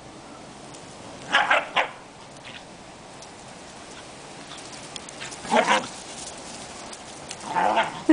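Scottish terrier barking in short bursts while playing with a ball: a quick run of barks about a second and a half in, another in the second half, and a third near the end.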